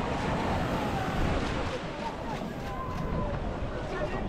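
Crowd of spectators talking and calling out at once, many overlapping voices, with wind buffeting the microphone.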